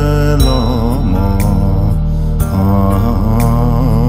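A Dzongkha Buddhist prayer song (choeyang), sung in long held, wavering notes over a studio backing of sustained low tones with a soft beat about once a second.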